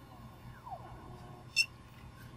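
Geeetech A10's extruder stepper motor whining faintly as it pulls the filament back out during an automatic filament change, its pitch gliding down. There is a short sharp click about one and a half seconds in.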